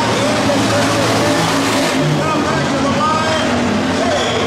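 Hobby stock race car engines running on a dirt oval, heard from the grandstand, mixed with the chatter of nearby spectators' voices.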